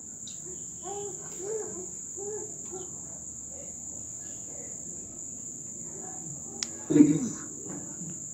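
A man's voice over a video call, soft at first and then a short louder burst about seven seconds in. A steady high-pitched chirring runs underneath throughout.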